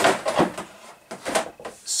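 Handling noise from a plastic RC car body shell being set on a high shelf: a few short scrapes and light knocks, the strongest in the first half-second and more around a second in.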